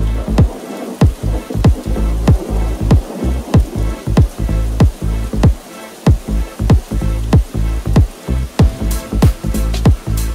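Chill electronic remix of a romantic film-theme melody: a kick drum about every two-thirds of a second under a sustained bass and melody. Crisp hi-hat ticks join near the end.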